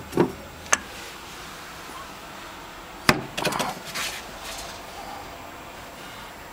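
A ceramic jug handled on a wooden shelf: a sharp knock about a second in, then a louder knock about three seconds in followed by a brief scraping clatter as it is set down.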